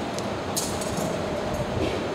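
Metal chains of a swinging thurible clinking, with a couple of short bright clinks about half a second in and near the end, over a steady background rumble.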